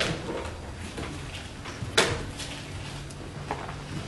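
A few short knocks and handling noises in a quiet room, with the sharpest knock about halfway through.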